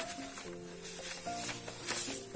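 Soft background music with held notes, and light paper rustling as a word card is drawn out of a paper envelope.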